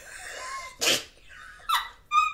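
A person's short, sharp, noisy breath, like a gasp, just before a second in, then a brief high vocal sound near the end.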